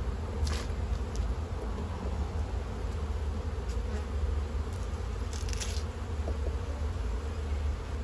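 Honeybees buzzing around an opened hive, a steady hum over a low rumble, with a few faint clicks.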